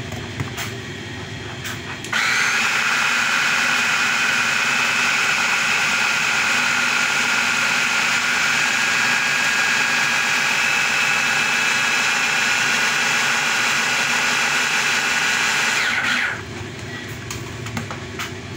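Electric hand blender on a jug attachment running steadily with a high motor whine, blending a thick banana and milkshake mix. It switches on about two seconds in and cuts off about two seconds before the end.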